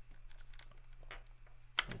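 Small plastic clicks and scrapes of a Sony NP-F550-type camera battery being pressed into the battery plate of a Neewer CN-160 LED light, with one sharper click near the end.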